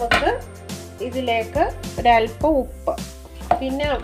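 A voice talking over steady background music; no separate sound from the hand mixing stands out.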